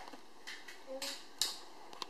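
A few light, sharp clicks and taps, the loudest about a second and a half in.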